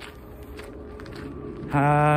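Wind rumbling on a phone microphone with a faint steady hum. Near the end a man's voice comes in with one long held vowel at a steady pitch, a filled pause in his speech.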